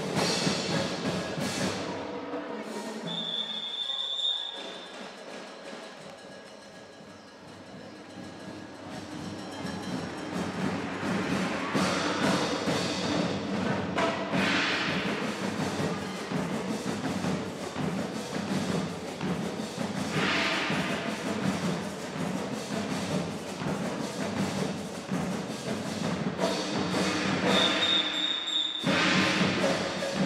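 Rudimental percussion band playing a drum cadence with bass drum. The playing drops quieter a few seconds in and builds back up. A brief high steady tone sounds about three seconds in and again near the end, just before the band breaks off for a moment and comes back in.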